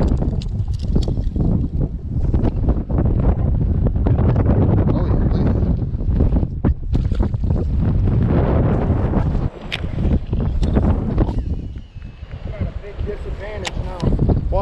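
Strong wind buffeting the microphone: a loud, steady low rumble that eases off briefly toward the end, with a few sharp clicks and knocks from handling.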